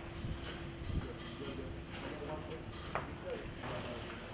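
Cattle shuffling in a barn, with scattered knocks of hooves on the concrete floor.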